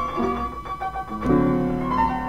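Solo blues piano playing, sustained notes followed by a new chord struck about a second and a quarter in.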